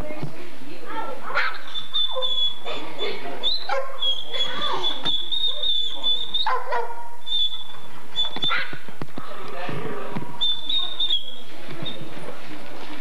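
Crated dogs yipping and whimpering, short rising and falling calls repeated throughout, with a high thin whine coming and going.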